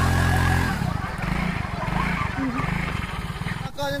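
Yamaha X-Ride scooter's single-cylinder engine held at a steady high rev as it strains to climb out of a muddy ditch. Under a second in it drops back to a lower, uneven running.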